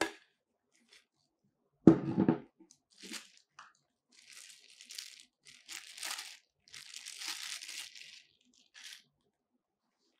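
A single loud thud about two seconds in as a metal reflector dish is set down on a table, then a clear plastic bag crinkling and rustling in bursts as a small remote control is unwrapped from it.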